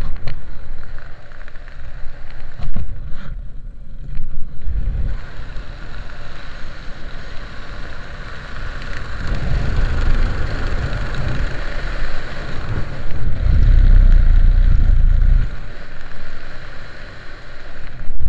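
Wind rushing over the microphone of a skydiver's head-mounted camera under an open parachute, swelling and easing in gusts and loudest about three-quarters of the way through.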